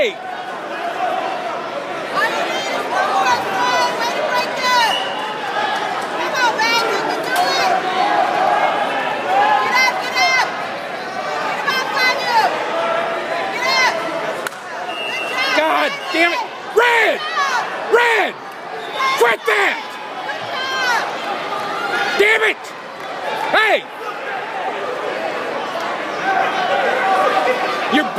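Crowd of spectators talking and yelling in a gymnasium, many voices overlapping, with louder shouts standing out in the middle stretch.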